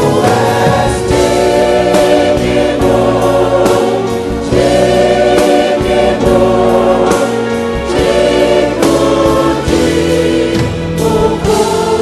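Large church choir singing a gospel song with instrumental backing and percussion. The choir holds long notes with vibrato.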